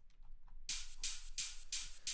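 A few faint clicks, then, about two-thirds of a second in, a drum and bass track starts playing back from the FL Studio project: ride cymbal hits, evenly spaced at about four a second.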